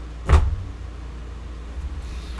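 A man's short breathy 'ah' about a third of a second in, then only a steady low hum.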